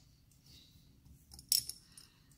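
A glass culture tube clinking as it is lifted out of a crowded test-tube rack among other tubes, with a few faint ticks and one sharp clink about one and a half seconds in.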